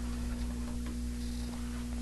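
Room tone with a steady electrical hum and a few faint ticks, about three over two seconds.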